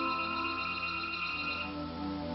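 Background music of sustained, held notes, with no beat.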